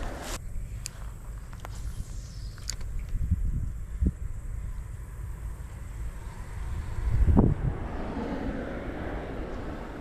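Wind rumbling on the chest-mounted camera's microphone, with a few light clicks in the first seconds and a louder swell of rumble about seven seconds in.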